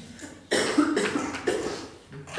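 A man coughing, a run of several coughs starting about half a second in.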